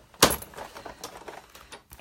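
A sharp knock about a quarter second in, then light clicks and rattles, as a Big Shot embossing machine and its plates are handled and set in position on the table.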